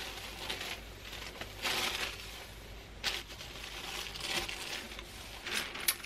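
Thin tissue-paper sewing pattern pieces crinkling and rustling as they are smoothed flat and handled, in a few short bursts.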